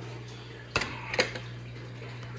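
Two sharp handling clicks about half a second apart as the carbon-fibre plate and aluminium chassis of an RC dragster are picked up and moved, over a steady low hum.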